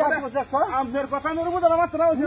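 A high-pitched voice, drawn out and wavering in pitch, with only brief breaks and no clear words.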